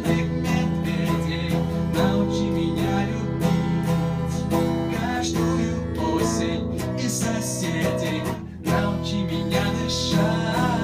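Electric guitar strummed with a man singing, a Russian rock song played through; the music dips briefly about eight and a half seconds in.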